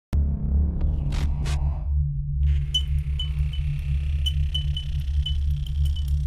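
Logo-intro music: a deep, steady bass drone with two quick swishes about a second in, then a high ringing tone sprinkled with bright, glittering pings from about halfway.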